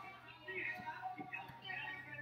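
Quiet room tone with a low steady hum and a few faint, indistinct soft sounds.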